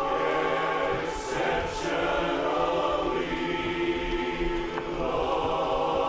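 Large men's barbershop chorus singing a cappella in close harmony, holding sustained chords with a brief shift in the chord partway through.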